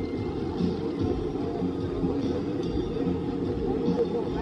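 A giant pendulum swing ride in motion, with a steady low mechanical rumble, mixed with music and a crowd of visitors.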